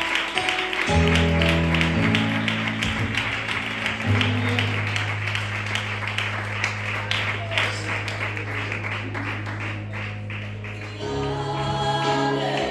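Congregational worship music: voices singing a gospel song over long held keyboard chords in the bass, which change every few seconds. Evenly timed claps, like hands clapping along, run over the top.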